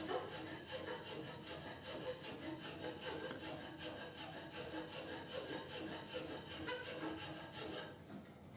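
Metal hand file scraping back and forth across the wooden body of a CO2 car held in a bench vise, in a steady run of strokes. It is filing out the saw marks left from cutting the car's shape.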